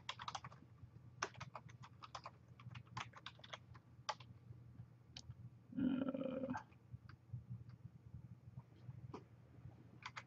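Computer keyboard typing, faint: a quick run of keystrokes over the first four seconds, then a few scattered key presses. About six seconds in comes a brief hum of a voice.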